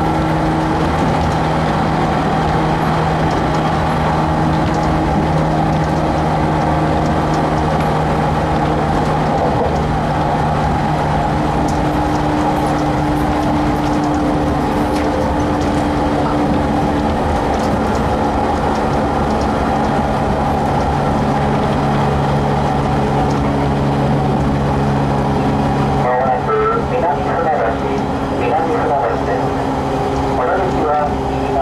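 Interior running sound of a 115 series electric train's motor car at speed: a steady hum from the traction motors and gears, whose pitch shifts a little, over the rumble of wheels on rail. About four seconds before the end the low rumble eases off.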